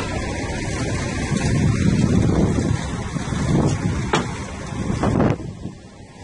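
Concrete pump truck's diesel engine running steadily while it pumps concrete into the foundation forms, with a few short sharp clunks in the second half.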